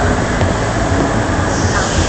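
Log flume boat moving along the water-filled trough: a steady, even rushing and rumbling of water and the ride's running.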